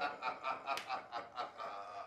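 A man chuckling, short pulses of laughter coming about four times a second.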